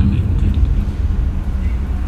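A pause in a man's speech, filled by a steady low rumble with a faint even hum above it.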